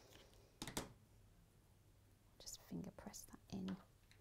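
Mostly quiet, with a brief soft scrape of handling about half a second in, then soft, low speech near the end.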